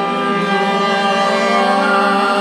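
A live ensemble of acoustic instruments and voices improvising intuitive music, holding a dense cluster of sustained notes that swells gradually louder.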